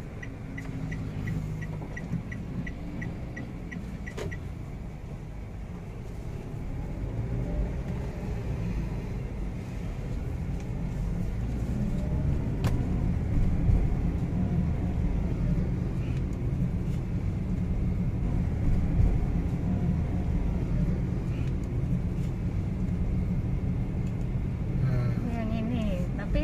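Road noise heard inside a moving car: a steady low rumble of engine and tyres that grows louder from about seven seconds in. For the first four seconds the turn indicator ticks, about three times a second.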